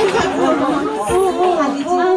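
Speech only: several young women's voices talking over one another through handheld stage microphones.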